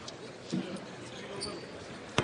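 A basketball bounces once on a hardwood court about half a second in, a free-throw shooter's dribble, over the steady chatter of an arena crowd.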